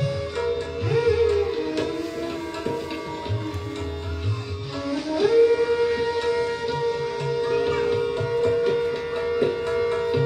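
Bansuri (bamboo flute) playing raga Marwa, sliding between notes in the first half and then holding one long note from about halfway, over a steady drone. Tabla accompanies with deep bass-drum strokes.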